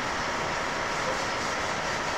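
A steady, even noise like hiss or a drone, at a constant level, with faint steady tones and no clear speech.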